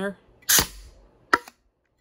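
Home-built 3D-printed HPA foam blaster firing once: a sharp blast of compressed air with a short hissing tail, then, under a second later, a single crisp click of its mechanism.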